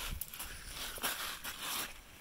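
Footsteps crunching and shuffling on wet creek gravel in shallow water, a few irregular steps.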